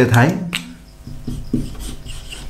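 Marker pen writing on a whiteboard: a run of short strokes starting about a second in.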